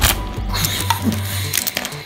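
Plastic linking cubes and wooden toy trains clattering down onto a hardwood floor as a stack of cubes is knocked over: a quick, irregular run of clicks and knocks, loudest at the start.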